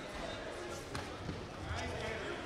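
Voices calling out in a large sports hall, with dull thuds of the fighters' feet bouncing on the competition mat and a sharp click about a second in.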